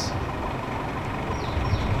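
Low, steady rumble of motor-vehicle engines idling in the background.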